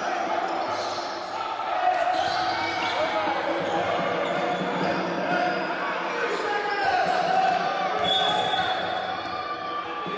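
A basketball being dribbled on a hardwood court during live play, with voices echoing around a large sports hall.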